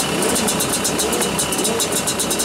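Honda CRM250AR's single-cylinder two-stroke engine idling steadily, heard close to the cylinder, with a fast, uneven high ticking on top of the running note.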